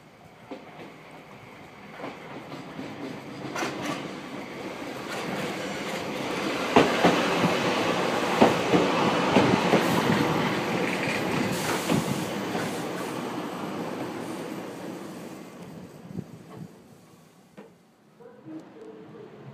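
Hokutetsu (Hokuriku Railroad) electric train set 7101 approaching and running close past. The wheels clack sharply over rail joints several times as it passes. The sound then fades as it moves away.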